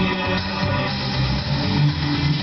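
Music from a portable MP3 player playing through the car stereo's speakers via its auxiliary input jack.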